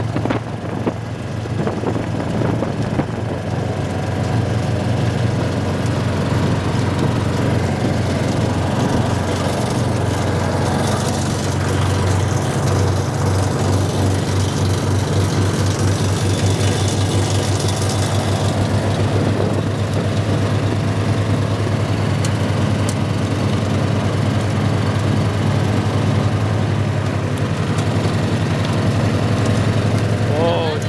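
Gator utility vehicle's engine running steadily while driving, with a noisier stretch of road and wind hiss partway through.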